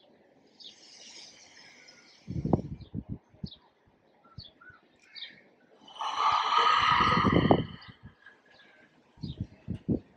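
Small birds chirping intermittently, with soft breathing, a few low bumps, and a louder rushing breath-like noise lasting about a second and a half, starting about six seconds in.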